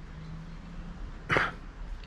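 Low background with a faint steady hum, then a single short, sharp vocal sound from a man a little over a second in.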